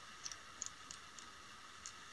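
Faint, irregular small ticks, about six or seven in two seconds, from fingers and tying thread handling a pinch of CDC feathers at a fly-tying vise, over a low room hiss.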